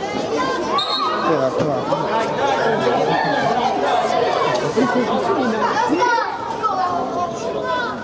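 Many overlapping voices of children and adults shouting and chattering in a large indoor sports hall.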